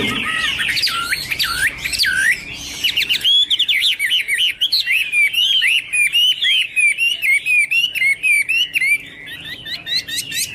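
Chinese hwamei singing: loud, slurred swooping whistles for the first three seconds, then a fast run of short repeated notes to near the end.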